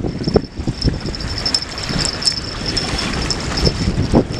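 Wind blowing across the microphone, a steady rushing noise with a few faint clicks.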